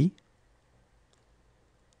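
The end of a spoken French word, then near silence with a few faint, sharp clicks.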